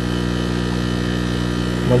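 Steady electric buzzing hum with many overtones, even in level, from an aquarium air pump driving the tank's sponge filter.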